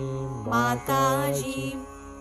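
A voice singing a Sahaja Yoga devotional mantra in a drawn-out, melodic chant over a steady held drone accompaniment.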